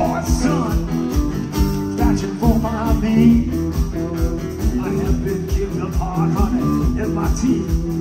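Live roots-rock band playing an upbeat instrumental passage: acoustic and electric guitars, bass and drums keeping a steady beat, with a washboard played along.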